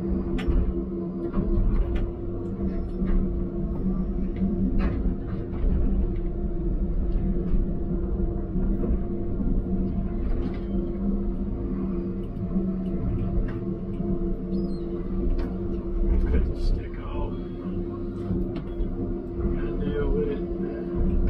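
Diesel engine and hydraulics of a John Deere grapple machine heard from inside its cab, running with a steady drone and low rumble while working under load to drag a stuck skidder. Scattered short clicks and knocks from the machine sound over it.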